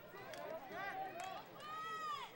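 Faint, distant shouting from lacrosse players and the sideline, a few short calls and then one longer call that rises and falls near the end, with a couple of faint sharp clicks.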